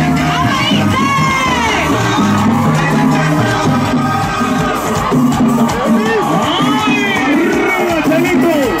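A crowd cheering and shouting over loud Latin dance music with a bass line that steps from note to note.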